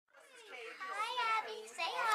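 A young girl's high-pitched voice, talking excitedly.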